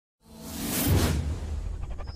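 Logo-intro whoosh sound effect that swells to a peak about a second in and then fades, over a steady low rumble.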